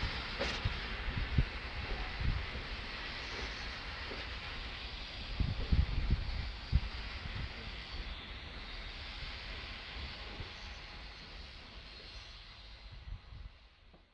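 Pafawag EN57 electric multiple units shunting slowly through station tracks: a steady hiss with irregular low knocks and thumps, strongest about six seconds in, fading gradually toward the end.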